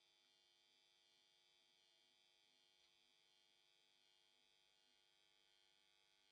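Near silence: only a faint steady electrical hum.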